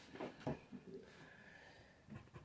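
Near silence: room tone, with two faint short sounds in the first half second.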